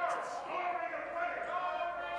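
Speech only: a man's voice speaking in a large, echoing chamber.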